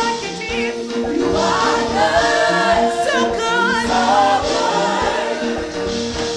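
A group of women singing a gospel worship song together into microphones, voices wavering with vibrato over a steady held instrumental note.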